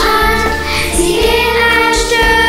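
A group of children singing a song together in sustained notes over an instrumental backing track with a steady bass.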